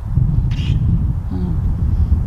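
Wind buffeting the microphone in a steady low rumble, with a brief faint hiss about half a second in and a faint short wavering call about one and a half seconds in.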